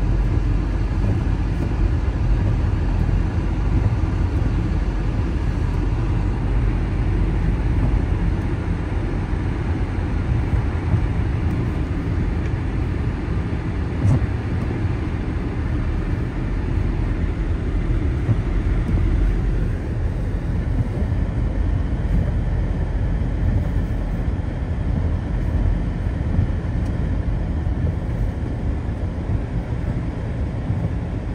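Steady low rumble of a car's engine and tyres heard from inside the cabin while driving, with a single brief click about halfway through.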